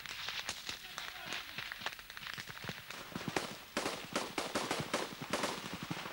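Small-arms gunfire: many irregular rifle shots in quick succession, coming thicker in the second half.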